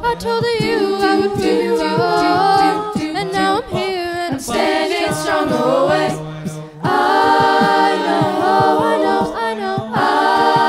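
A cappella vocal ensemble singing into microphones: the group holds a chord over a low bass note while a solo voice sings runs above it. The sound thins briefly about six and a half seconds in, then the full chord comes back in.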